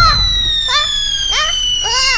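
A cartoon falling whistle, one long tone sliding slowly downward, with three short squeaky cries from a cartoon character over it.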